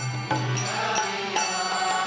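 Devotional kirtan music: a mridanga drum played with hand strokes under held melodic notes, with repeated high ringing strikes of small hand cymbals.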